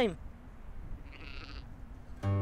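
A single faint sheep bleat about a second in, over a low rumble of wind.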